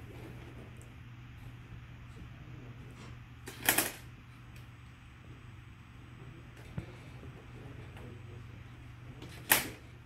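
LEGO Mindstorms NXT mouse trap being worked by hand: two sharp plastic clacks, a short cluster about four seconds in and a single one near the end, with a softer click in between, over a steady low hum.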